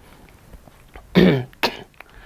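A man coughing: a longer cough about a second in, then a short sharp one near the end.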